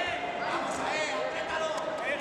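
Several spectators' voices shouting at once, indistinct, over steady crowd noise.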